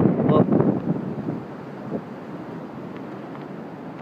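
Wind blowing over a phone's microphone: a steady noise, after a few spoken sounds in the first second.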